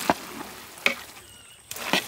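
Syrup-soaked boondi being stirred in a large metal pot, with three stirring strokes about a second apart.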